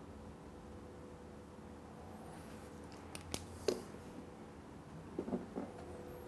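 Mostly quiet room tone with a faint steady hum while gear oil is poured slowly from a plastic bottle into the motorcycle's gearbox filler hole. A sharp click a little past three seconds, a short soft sound just before four seconds and a few more about five seconds in come from handling the bottle at the filler.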